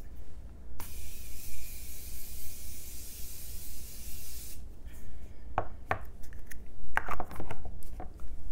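Continuous-mist setting spray bottle releasing one long, steady hiss of fine mist for about four seconds, starting just under a second in. A few light knocks follow near the end.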